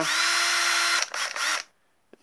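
Makita cordless drill-driver spinning free with no load: the motor runs steadily for about a second, stops, then runs again for about half a second before stopping.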